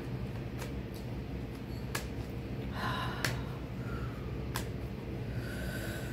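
A woman's heavy breath out close to the microphone about three seconds in, with a few faint sharp clicks scattered through and a low steady hum underneath.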